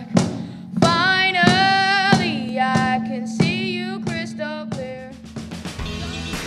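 A young voice singing a melody over a steady beat on a cajón, about three hits every two seconds, fading toward the end.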